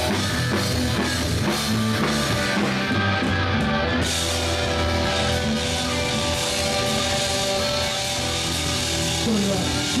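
Live rock band playing: electric guitars, bass and drum kit. About three seconds in the cymbals drop out briefly, then come back in about a second later under long held chords.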